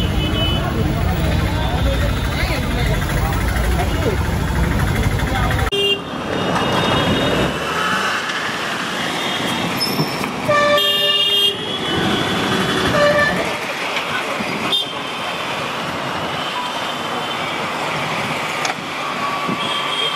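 Busy city street traffic with vehicle horns honking again and again, one longer honk about ten seconds in. A low engine rumble fills the first six seconds and stops abruptly.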